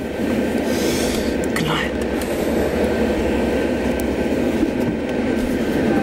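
Steady rumble and road noise inside a moving tour bus, even throughout.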